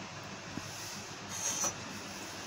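Low steady hiss, with a brief scraping rub about one and a half seconds in as the glass blender jar is handled on its base. The blender motor is not running.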